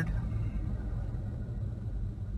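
Steady low rumble of a Toyota Tacoma's 3.5-litre V6 and road noise inside the cab, as the truck coasts down in third gear while slowing toward a stop.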